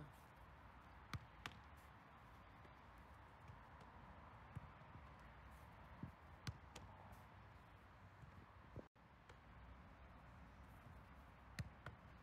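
Quiet outdoor background broken by a handful of short, sharp thuds, about five in all, of a football being kicked, thrown and caught against goalkeeper gloves.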